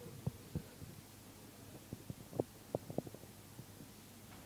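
Microphone handling noise: irregular low knocks and thumps as a microphone is fiddled with on its table stand, with a quick cluster of sharper knocks between two and three seconds in.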